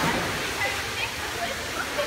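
A child drops from a rope swing into an indoor pool, landing with a splash right at the start. Then comes the steady wash of water and children's voices in the indoor pool hall.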